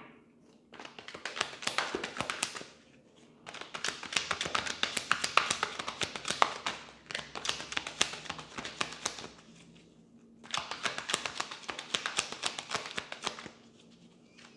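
A deck of tarot cards being shuffled by hand: quick, dense flicking and clicking of the cards in three spells with brief pauses between them.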